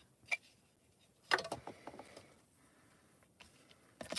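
Small handling noises on a craft desk: a faint click, then a light knock with a short rattle about a second in as the plastic stamp-scrubber box is set down, and a tiny tick near the end.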